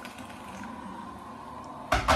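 Kettle heating toward the boil with a steady low hiss, then a sharp knock near the end.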